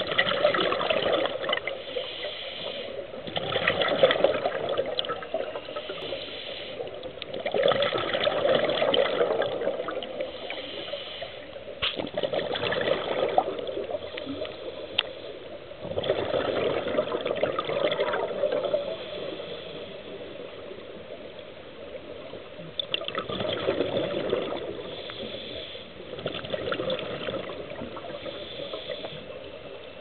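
Scuba diver's regulator breathing heard underwater: a breath every few seconds, a hiss on the inhale followed by a gurgling rush of exhaled bubbles, with a longer pause about two-thirds of the way through.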